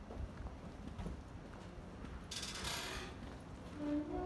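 Footsteps on a paved street under low street ambience, a soft thud every half second or so. About two and a half seconds in there is a brief rushing noise lasting under a second.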